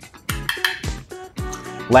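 Several light metallic clinks of a steel jigger against a bottle neck and a stainless cocktail shaker tin as a measure of liqueur is poured and tipped in, over background music.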